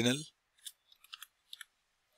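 Computer keyboard typing: about five faint key clicks, some in quick pairs, after the last word of speech fades out.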